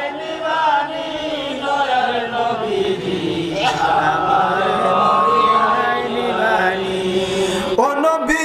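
A man's voice chanting a devotional refrain in long, held, wavering melodic notes. The sound thickens in the middle, with a steadier high tone alongside the voice.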